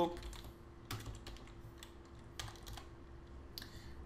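Computer keyboard being typed on: a handful of separate, spread-out key clicks over a faint steady hum.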